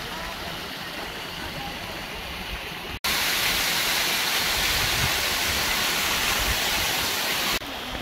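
Mountain stream rushing over rocks. About three seconds in, a sudden cut brings the louder, closer rush of a small waterfall cascading down rock, which drops back to the quieter stream shortly before the end.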